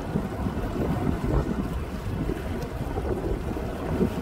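Wind buffeting the microphone aboard a moving boat: a steady low rumble with water noise beneath it.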